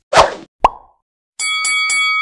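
Edited-in sound effects: a short noisy burst, then a sharp pop. After a brief silence comes a quick run of four bright electronic chime notes that keep ringing.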